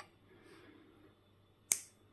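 A single sharp click near the end, as a connector is pushed into place on the generator's wiring.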